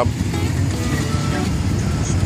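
Job-site engine-driven equipment running steadily during a pipe-liner installation: an even, loud low rumble.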